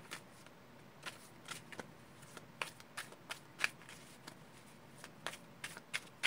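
A deck of Osho Zen tarot cards being hand-shuffled: a faint, irregular string of short card clicks and slides.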